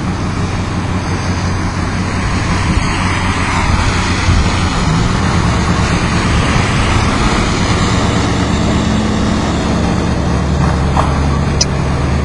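Street traffic: vehicle engines running close by with a steady low hum, and a car driving past about midway, its tyre noise swelling and fading.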